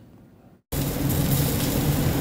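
Skewers of chicken and pork sizzling on a binchotan charcoal grill. The sizzle starts suddenly about two-thirds of a second in, after a brief lull, and then holds steady.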